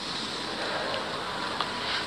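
Steady background hiss of the lecture recording in a gap between phrases, with no voice.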